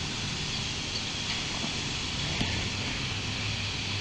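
Steady outdoor background noise with a low, even hum, and a few faint scrapes of gloved fingers working loose soil.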